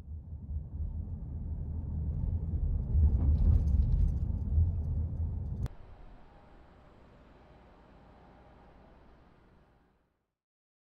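Low rumble of city street traffic, swelling in the middle, then an abrupt cut to a much fainter, steady outdoor hum that fades out near the end.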